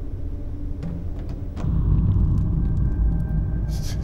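A low, deep rumbling drone that swells up about a second and a half in and holds, with a thin steady high tone above it and a brief hiss near the end.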